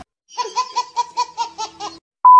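A baby laughing: a quick run of short, high-pitched laughs, about five a second, starting a moment in.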